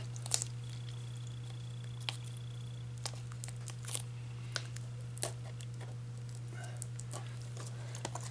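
Plastic shrink wrap on a DVD case being picked at and peeled by fingernails: scattered small crinkles and clicks, over a steady low hum.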